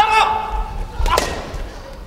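Padded air-filled chanbara swords striking, with a sharp smack at the start and another about a second in; a short shout rings out with the first hit.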